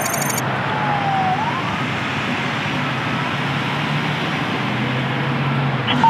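Roadside traffic noise with a steady low engine hum, and a siren wail that drops in pitch and then rises again about a second in.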